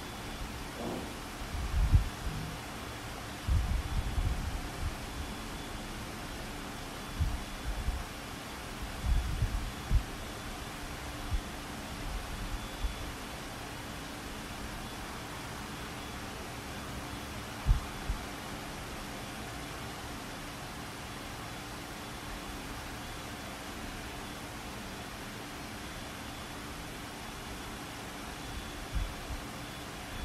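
Open microphone picking up a steady hiss and a faint hum, with a few scattered low thumps, the loudest a little before the middle.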